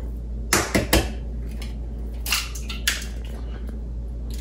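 An egg rapped against the rim of a bowl and cracked open one-handed: three sharp taps close together about half a second in, then two more clicks later as the shell breaks apart.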